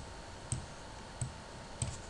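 Four single, light clicks at a computer, roughly evenly spaced, as an entry field is selected.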